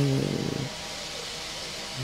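A woman's voice drawing out a hesitant 'eee' for about half a second, then a pause with only faint steady background noise.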